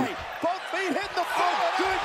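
Speech: a man exclaims "Oh!" at the start, then a quieter voice goes on in short pitched bursts, several a second.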